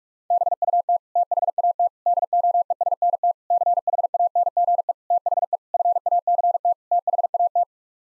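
Morse code sent as a single steady tone at 45 words per minute: rapid dits and dahs in seven word groups with short gaps between them, spelling the phrase 'but that doesn't change the fact that'. It starts a fraction of a second in and stops shortly before the end.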